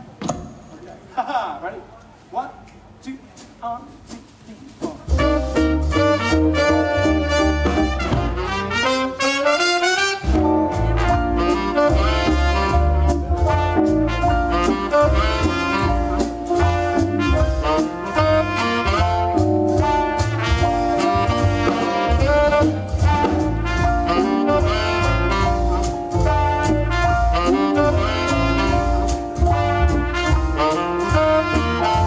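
A small swing band of trumpet, saxophone, piano, double bass, guitar and drums comes in about five seconds in, after a few quieter seconds. A rising run follows, then the full band plays an up-tempo swing tune over a steady beat.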